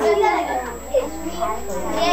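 Young children's voices chattering and murmuring together, indistinct and overlapping.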